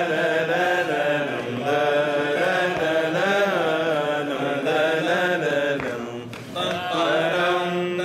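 Unaccompanied male cantor singing a long melismatic vocal passage in maqam Rast, his pitch bending and wavering through each phrase. He breaks briefly for a breath about six seconds in, then carries on.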